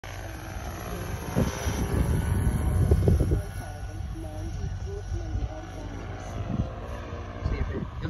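Giant-scale electric RC Chinook tandem-rotor helicopter flying past, its two rotors beating steadily. It is loudest from about one to three and a half seconds in as it passes closest, then quieter as it moves off and climbs.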